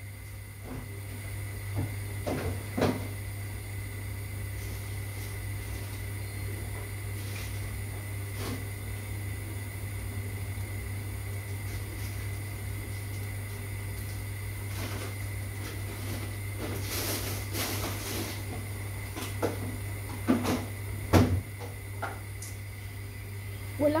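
Steady low hum with a few scattered knocks and clunks of things being handled in a kitchen, and a brief rush of noise about three quarters of the way through.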